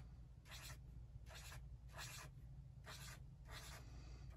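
Felt-tip marker on sketchbook paper, drawing small circles: short, faint scratchy strokes, about two a second.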